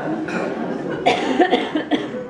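Audience murmuring in a reverberant hall, with a cough about a second in.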